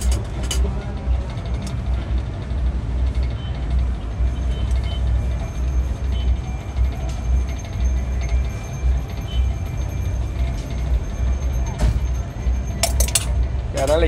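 Steady low rumble of street noise with faint music in the background, and a few light clinks of jars and utensils, most of them near the end.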